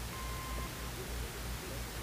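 Steady low hum and hiss from an old recording, with one brief faint beep of about half a second near the start: a slide-advance cue tone.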